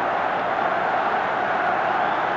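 Ice hockey arena crowd noise: a steady, even din from the spectators with no pauses or single loud events.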